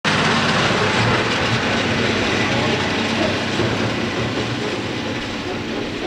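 Tractor engine running as it draws a high-sided silage trailer past and away, with the trailer body rattling; the sound fades slightly.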